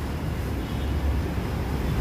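Steady low rumble of background noise, with no speech over it.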